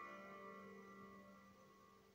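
A 14-string gusli (Russian psaltery) with a hollowed-out cedar body, a plucked chord ringing on and slowly dying away; the higher notes fade first and a low note lingers longest.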